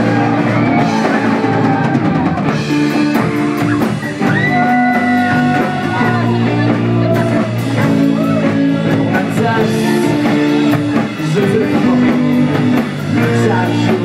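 Rock band playing live on electric guitars and drum kit, with singing, loud and continuous.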